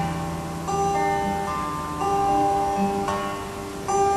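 Acoustic guitar playing a song intro, picked chords ringing, with new chords struck about once a second.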